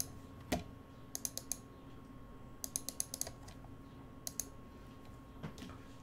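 Computer keyboard keystrokes: two quick runs of clicks, about a second in and near the middle, with a few single clicks between them. A faint steady hum sits underneath.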